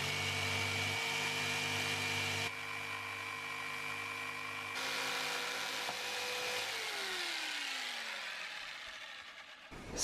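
Corded electric jigsaw running steadily while cutting a curve into a wooden shelf board, a steady motor whine. About two-thirds of the way through, the motor is switched off and winds down with a falling pitch.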